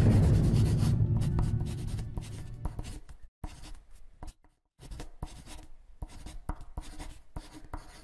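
Marker pen writing in quick, irregular strokes, with a short pause about halfway through. A low sound fades out over the first two seconds.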